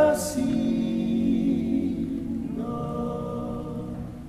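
Male vocal quintet singing a Carinthian folk song a cappella, holding the long closing chord as it slowly fades. A short hiss sounds just after the start, and a higher voice enters on a held note about two and a half seconds in.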